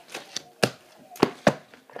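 Three sharp knocks as books are picked up and handled close to the microphone: one just over half a second in, then two close together a little past the middle.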